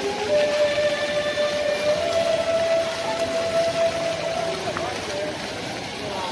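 Crowd chatter over splashing fountain water, with a long steady tone held for about four and a half seconds.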